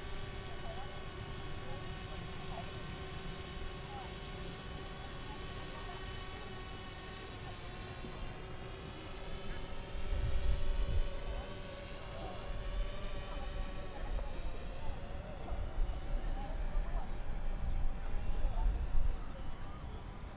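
A camera drone's propellers hovering, a steady whine of several tones that drifts slowly up and down in pitch. Low rumbling gusts of wind hit the microphone from about halfway through.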